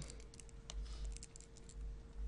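Faint, irregular light clicks and taps of a stylus writing on a tablet screen, over a low steady electrical hum.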